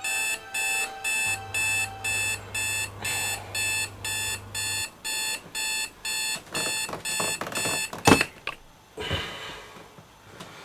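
Electronic alarm clock beeping in a steady rhythm, a little under two beeps a second. About eight seconds in, a sharp knock is heard and the beeping stops.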